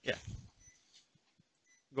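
Faint, short, high electronic beeps, twice about a second apart, from the cath-lab patient monitor sounding with each heartbeat, after a brief spoken word.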